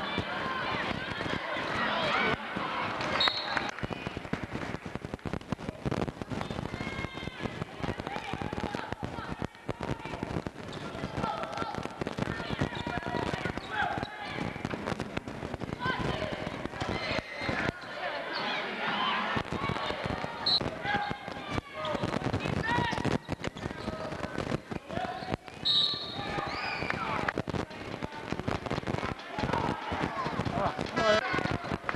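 Indoor basketball game: a basketball bouncing on the hardwood court, with scattered knocks and voices of players and spectators calling out in the gym.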